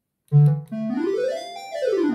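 Roland VariOS sound module playing its Jupiter-8 emulation on a square-wave patch. A low synth note starts about a third of a second in and is held while a second tone glides up in pitch and back down.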